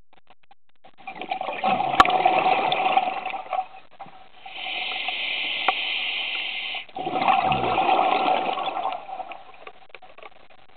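Scuba diver breathing through an open-circuit regulator underwater. There is a gurgling burst of exhaled bubbles about a second in, a steady hiss as the diver breathes in around the middle, and a second burst of bubbles later on.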